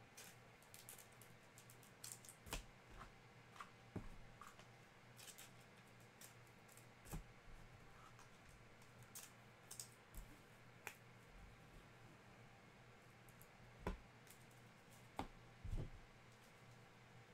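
Near silence: a low steady hum with scattered faint clicks and taps, a little louder near the end.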